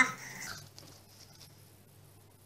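Faint crinkling of a small crumpled paper slip being unfolded by hand, just after a short vocal sound that fades out in the first half-second.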